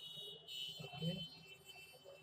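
A steady high-pitched whine that stops shortly before the end, with a brief low murmur of a man's voice about a second in.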